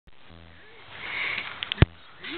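Labrador puppy sniffing and snuffling at close range, with a short whimper-like tone early on, a few clicks, and one sharp knock just before the end.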